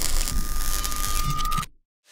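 MIG welding arc on carbon steel, a steady crackling sizzle with a thin steady tone over it. It cuts off suddenly near the end.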